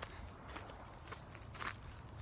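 Faint footsteps of a person walking, a few soft steps about half a second apart, over a low rumble.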